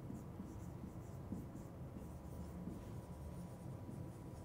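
Marker pen writing on a whiteboard: a faint run of short strokes as letters are drawn.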